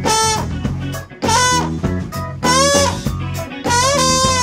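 Live funk-fusion band playing: a trombone plays short phrases with bending notes over electric guitar, bass and drum kit.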